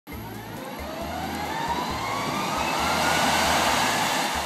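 Jet airliner engines with a whine that rises slowly in pitch over a steady rush of noise, growing louder.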